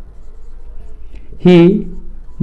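Marker pen writing on a whiteboard, a faint scratching of the felt tip on the board, cut into near the end by a single spoken word.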